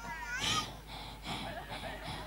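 A faint, short, high-pitched wavering cry, meow-like, about half a second in, followed by faint indistinct sounds.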